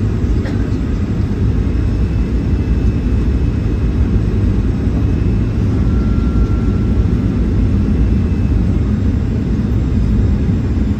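Jet airliner cabin noise heard from a window seat during the landing: a loud, steady low rumble of engines and rushing air as the plane comes down over the airfield and onto the runway.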